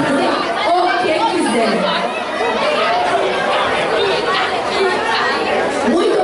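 Many people talking at once: a steady mix of overlapping voices, with no one voice standing out, in a large hall.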